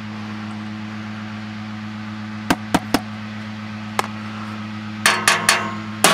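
Empty glass beer bottle being handled and tapped on a hard tabletop: a few sharp clinks in the middle, then a quick run of taps near the end, over a steady low hum.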